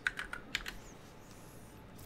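Computer keyboard typing: a few quick, light keystrokes in the first half second or so, entering a web search.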